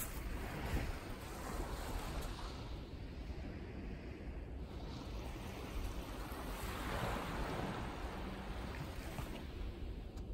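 Small waves of Lake Superior washing onto a sandy shore, swelling twice, with a low rumble of wind on the microphone.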